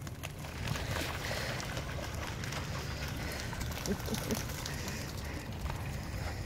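Dogs running and splashing through a shallow puddle: a steady wash of splashing and paw strikes in water, with a low rumble underneath.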